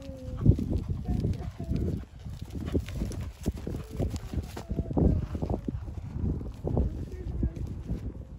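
Hooves of a horse cantering on grass: a run of dull, uneven thuds that come close and pass by.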